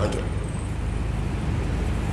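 Steady background noise with a low hum underneath, even in level, during a pause in speech.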